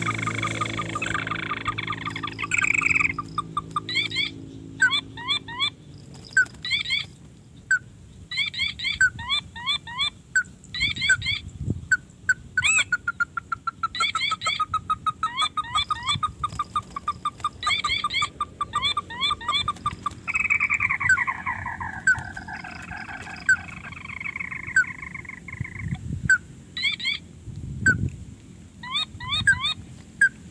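Crakes (burung tikusan) calling: repeated bursts of quick, evenly spaced chirping notes, a sustained rapid trill about halfway through, and a run of falling notes a little later.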